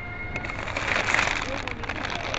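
A large plastic bag of frozen chicken nuggets crinkling and rustling as it is lifted out of a chest freezer. The rustle is loudest about a second in.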